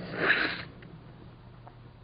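A man's short, noisy breath drawn in through the nose in a pause between spoken phrases, lasting about half a second at the start, followed by a faint steady low hum in the recording.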